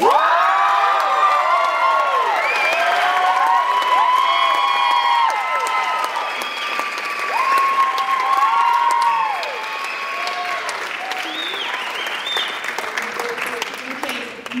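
An audience applauding, with many high whooping cheers over the clapping. The whoops thin out after about ten seconds while the clapping carries on.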